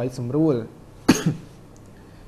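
A single short cough about a second in, following a few words of speech.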